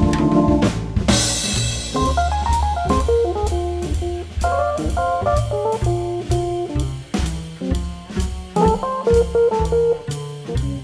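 Jazz organ combo. A held Hammond organ chord cuts off just under a second in on a cymbal crash. Then the drum kit keeps a steady cymbal beat under a stepping bass line and a single-note melodic solo line.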